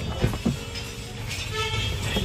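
Two light knocks from the plastic glovebox of a Maruti Wagon R being handled, about a quarter and half a second in, over a low steady rumble. A short, flat, horn-like tone follows near the end.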